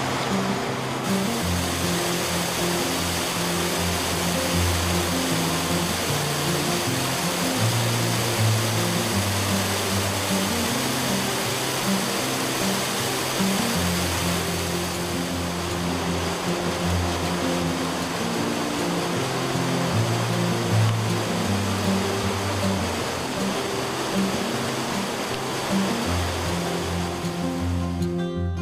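Background music with a line of low notes that changes every second or so, over a steady rush of flowing water.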